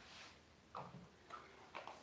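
Near silence with a few faint light taps and clicks of small objects being handled on a work table.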